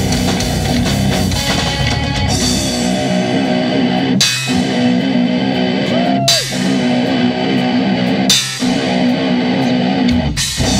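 Live rock band playing: electric guitars over a drum kit, loud and dense, with accented hits about every two seconds.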